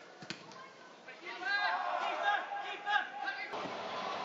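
Distant voices shouting across a football pitch, starting about a second in after a single sharp knock. Near the end the sound changes abruptly to a steady outdoor rush.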